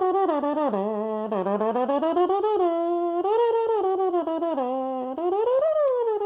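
A solo wind instrument playing one unbroken, legato melody that slides between notes, dipping low about a second in and rising to its highest note near the end.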